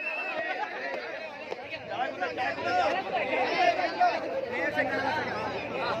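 Many voices talking and calling out over one another at once: the chatter of a group of people gathered close together.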